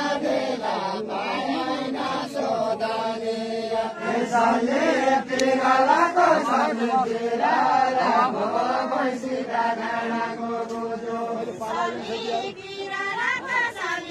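A group of voices chanting a folk song together, holding long drawn-out notes that shift in pitch every second or two.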